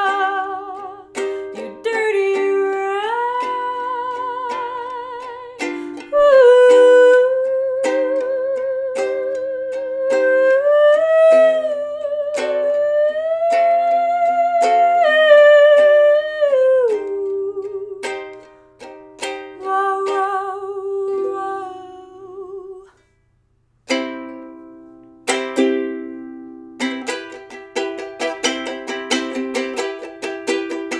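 Solo ukulele strummed under a long wordless vocal melody, held notes with vibrato gliding up and down. The voice stops about 23 seconds in, there is a short moment of silence, then the ukulele strums on alone.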